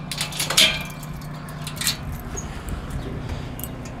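A key rattling in a door lock and the door being opened, with a few sharp clicks in the first two seconds, then a low steady rumble.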